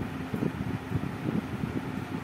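A low, uneven background rumble of room noise picked up by the microphone, in a pause between phrases of a man's speech.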